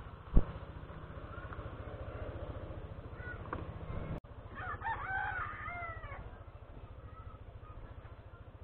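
A rooster crows once, about four and a half seconds in, a call of a second and a half that rises and falls. Underneath runs the steady low throb of an idling motor-scooter engine, and a sharp knock sounds just after the start.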